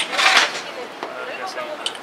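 Blitz chess play with plastic pieces and a chess clock: one sharp click right at the start, a short hiss just after it, then a couple of light ticks, with low voices in the background.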